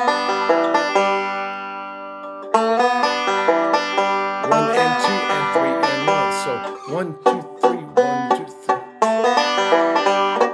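Five-string banjo picked with fingerpicks, playing the G lick cut down to fit a three-four waltz measure by dropping its first half. Notes struck at the start ring and fade for about two seconds, then a run of quick picked notes follows.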